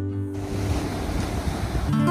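Ocean surf on a sandy beach, a steady rush of waves, starting as acoustic guitar music cuts off about a third of a second in.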